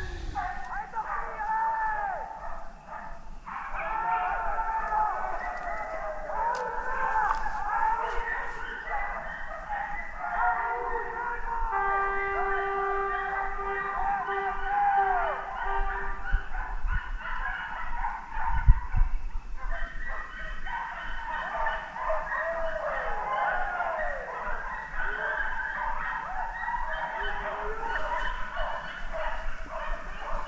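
A pack of hunting hounds giving tongue as they run a wild boar, many overlapping bays and howls rising and falling in pitch. About twelve seconds in, a steady held note sounds for some five seconds, and there is a single thump a little later.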